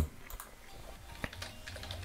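Typing on a computer keyboard: irregular key clicks, one louder about a second in.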